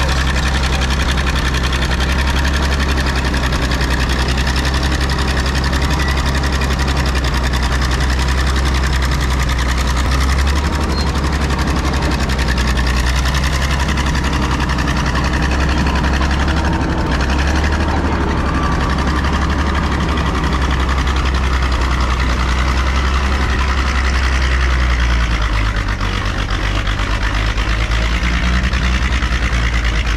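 Diesel engine of a 1956 Caterpillar D6 9U crawler dozer running steadily and loud as the dozer crawls and pushes through brush. The low drone dips a little and changes note near the end.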